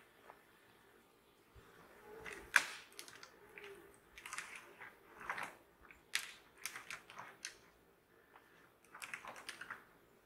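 A red deer stag working its antlers in low larch branches: irregular crackling of twigs and swishing of needles, with one sharp crack about two and a half seconds in.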